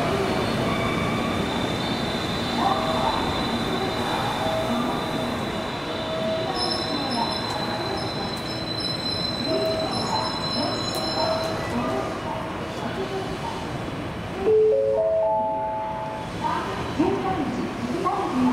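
Railway station platform ambience: a public-address voice speaking over the platform, with train noise and a thin high steady tone for the first ten seconds or so. About fourteen and a half seconds in, a short electronic chime of a few notes steps upward in pitch.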